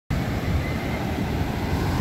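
Ocean surf breaking, a steady wash of noise, with wind blowing on the microphone.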